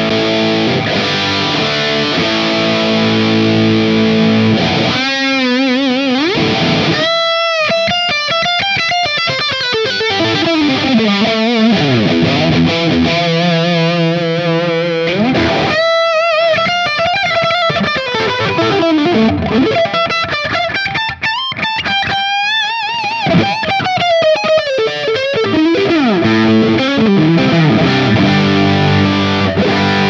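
Heavily distorted electric guitar, a Charvel Pro-Mod DK24 with Seymour Duncan humbuckers, played through the Seymour Duncan Diamondhead pedal at full gain with its 805 saturation stage engaged. Sustained chords for the first few seconds, then lead lines with wide vibrato and string bends.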